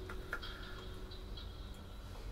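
Quiet room tone after the flute music has ended, with a few faint, scattered ticks and small clicks.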